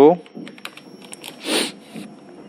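Computer keyboard keys clicking as a command is typed slowly, a few keystrokes with gaps between them. A short rush of noise comes about one and a half seconds in.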